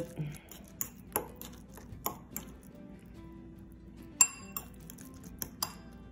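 A metal fork clinking and scraping against a ceramic bowl while mashing soft baked yams: several sharp clinks at uneven intervals, the loudest about four seconds in.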